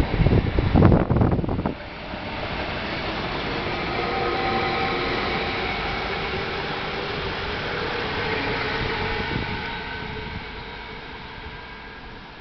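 Electric multiple unit passing close at speed. Gusts hit the microphone for the first couple of seconds, then steady running noise with a faint whine carries on and dies away about ten seconds in.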